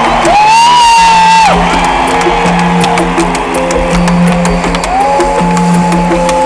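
Live band music played loud, with crowd noise mixed in. A long high note is held over a steady bass line; it ends about a second and a half in, and a second long note starts about five seconds in.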